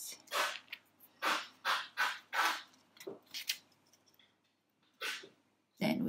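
Soft, breathy laughter: a string of short exhaled bursts, two to three a second, dying away after about three and a half seconds, with one more near the end.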